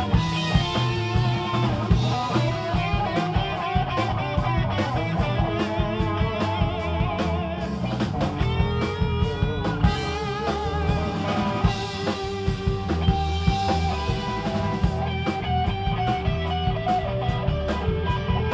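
Live rock band playing an instrumental passage: an electric guitar lead line with bends and vibrato over bass and drums, with evenly spaced cymbal strikes.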